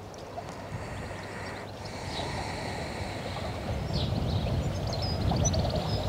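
Outdoor ambience: a rushing noise with a low rumble that swells gradually over the few seconds, typical of wind on the microphone, with a few faint high chirps near the end.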